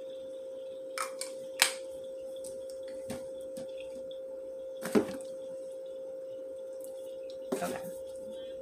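A few knocks and taps as body mist bottles are handled and picked up, the sharpest about a second and a half in and about five seconds in, over a steady high-pitched hum.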